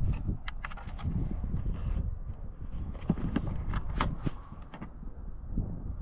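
Irregular clicks and knocks over a low rumble, typical of a hand-held camera being moved about and of footsteps on the ground.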